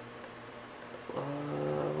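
A quiet room for about a second, then a man's long drawn-out hesitation "uhhh", held on one low steady pitch while he thinks.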